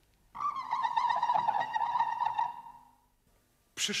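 A single high held tone, wavering slightly in pitch like vibrato, sounding for about two and a half seconds and fading out.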